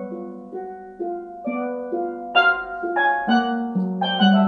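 Tenor and double second steel pans played together with mallets: a line of struck, ringing notes over lower accompanying notes. The notes are sparser and softer at first, with a louder cluster of notes a little past halfway.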